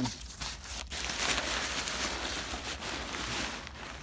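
The folded fabric of an airblown inflatable rustling and crinkling as it is handled and pulled out of a cardboard box, a continuous rustle from about a second in.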